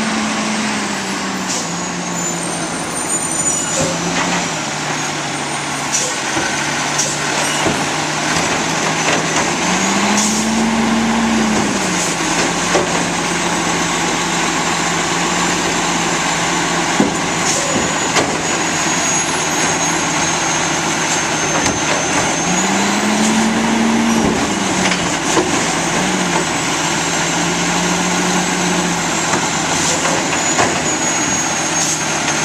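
Automizer automated side-loader garbage truck running, its engine revving up twice as the hydraulic arm works, lifting a cart and tipping it into the hopper. A high whine runs alongside, with scattered knocks and clatters from the cart and falling trash.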